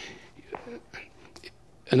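A breathy exhale followed by faint, low murmured voice sounds, with a small click shortly after the middle.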